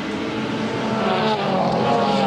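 Engines of a pack of racing cars running close together, the engine note rising in pitch and growing louder over the second half.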